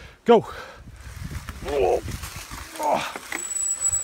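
A voice calls "Go", then mountain biking begins on a leaf-covered trail: a steady low rumble of riding and wind noise on the microphone, with two short vocal sounds along the way.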